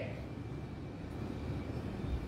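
Steady low background rumble with a faint thin high whine, room noise heard in a pause between speech.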